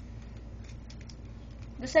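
A quiet room with a few faint, light clicks and handling noise; a voice begins near the end.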